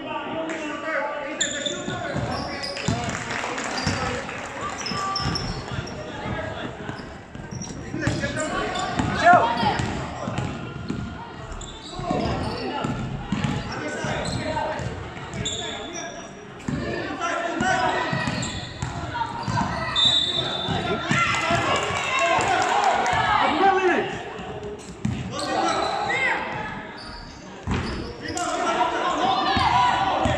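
Basketball bouncing on a hardwood gym floor during play, with indistinct voices of players and spectators echoing in the large hall.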